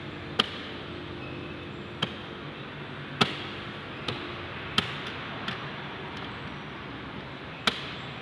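Seven sharp, irregularly spaced taps on a car's plastic front bumper around the fog-lamp opening, as a hand presses and pats the panel, over a steady low workshop hum.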